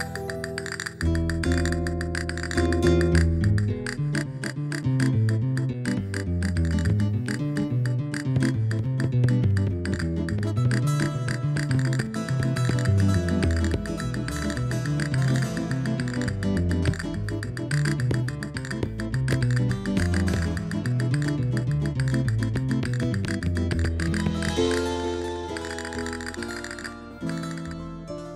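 Spanish-style guitar music: fast plucked and strummed notes over a moving bass line, with the music changing near the end.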